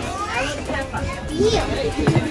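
Children's voices chattering, mixed with other people talking, with a high rising call about half a second in.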